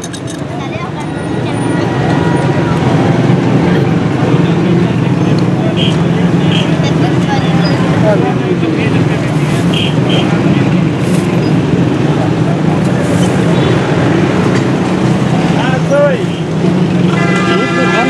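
Steady street traffic and motor noise, with voices in the background. A vehicle horn toots near the end.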